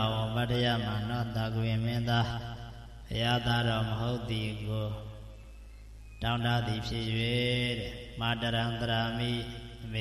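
A monk's voice reciting Pali text in a sustained, sing-song chant into a microphone, breaking off for about two seconds midway before resuming.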